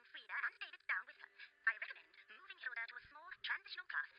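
Cartoon dialogue played back from the episode: characters talking in quick turns, thin-sounding with the highs cut off.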